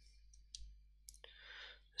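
Near silence with a low hum, broken by two faint clicks and then a short breath in.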